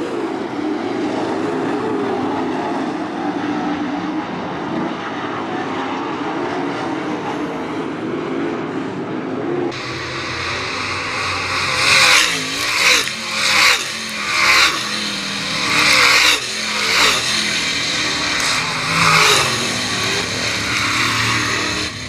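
Dirt late model race cars' V8 engines running at racing speed, first heard from a distance with a wavering pitch. About ten seconds in the sound changes abruptly, and cars pass close by one after another, each pass a loud rise and fall in engine noise, about seven passes in all.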